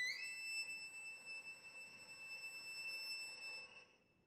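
Solo violin slides up to a high note, holds it for about three and a half seconds as it slowly fades, and breaks off just before the end.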